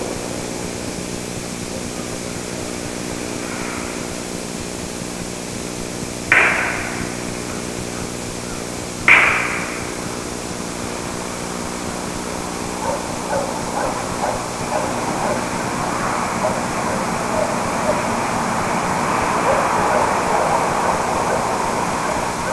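Two sharp knocks, each with a brief ringing tail, about three seconds apart, over a steady hum. From about halfway through, a growing jumble of short yelping calls, like distant dogs, builds toward the end.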